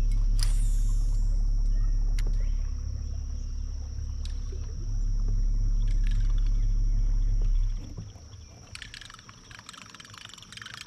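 A loud, steady low rumble that stops abruptly about eight seconds in, followed by faint crackling, splashy sounds.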